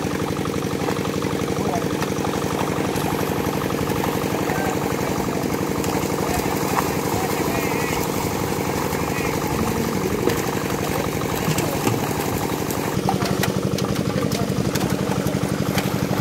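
A small engine running steadily at constant speed, over water splashing as netted fish thrash.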